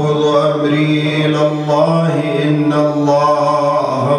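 A man chanting a Shia mourning elegy. His voice is held in long, sustained notes, ornamented with gliding melismatic turns.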